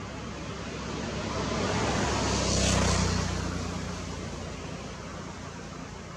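A motor vehicle passing by: its sound swells to a peak about three seconds in, a low hum under a rushing noise, then fades away.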